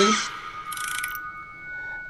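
Electronic launch sound of the thermal camera's phone app, played through the phone's speaker as the app opens: a few steady high tones held together, with a brief airy swish about a second in.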